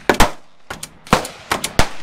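A quick, irregular run of about eight loud, sharp bangs in two seconds, some in close pairs, each with a short ringing tail.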